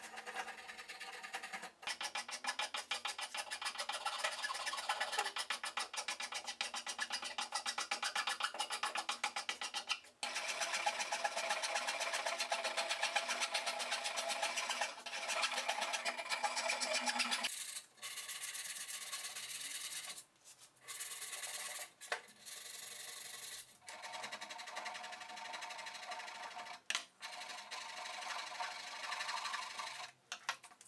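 Hand tools shaving and rasping a carved basswood instrument body: a spokeshave and steel rasps rubbing in quick, repeated strokes. The first half is dense and continuous; after that it is a little quieter, with several short pauses between runs of strokes.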